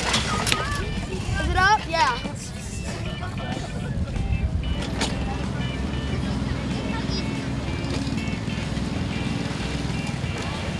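Spectators' voices around a children's pedal tractor pull, with one loud wavering shout about two seconds in. A steady low hum runs underneath from about halfway through.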